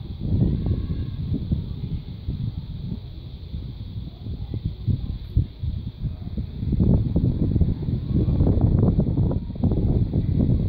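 Wind buffeting the microphone: an uneven low rumble that swells in gusts, strongest just after the start and again over the last few seconds.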